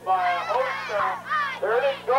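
Several high-pitched voices shouting and yelling over one another, close to the microphone.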